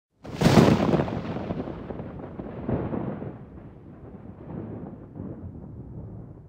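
A sudden deep boom, like an explosion or a thunderclap, right at the start, trailing into a long rolling rumble that swells again nearly three seconds in and slowly dies away: a cinematic boom sound effect laid under a logo.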